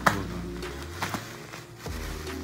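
Background music with steady held notes, over which scissors snip sharply through plastic bubble wrap about four times, the loudest snip right at the start.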